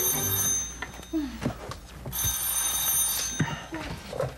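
Telephone ringing: one ring ending about half a second in, and a second ring of about a second starting about two seconds in.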